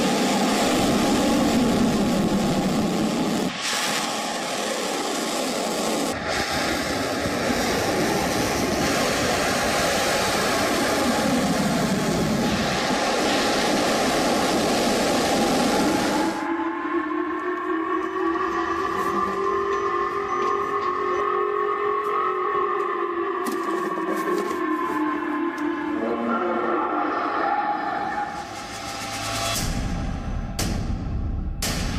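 Ballistic missile launch: a loud, even roar of rocket exhaust for about sixteen seconds. It is followed by a public warning siren wailing for about ten seconds, its pitch slowly rising and then falling.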